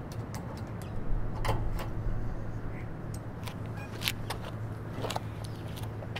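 Light metallic clicks and taps as a hand tool works at the set screws of an antenna mast base, scattered irregularly, over a steady low hum.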